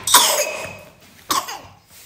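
A small child coughing twice, the second cough about a second after the first and weaker.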